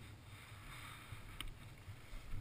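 Low wind rumble on a helmet camera's microphone, with a soft rustling hiss for the first second or so and a single sharp click about one and a half seconds in.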